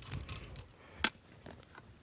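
Faint handling noise of a bailout rope being worked along a hook's handle, with one light sharp click about halfway through.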